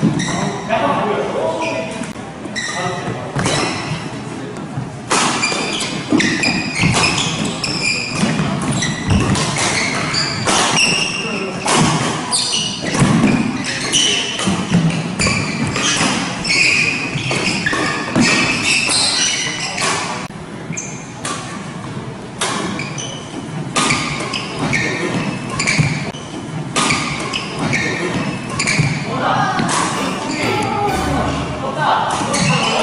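Badminton doubles rallies in a reverberant hall: repeated sharp racket strikes on the shuttlecock and shoe squeaks on the wooden court floor, with players' voices between points.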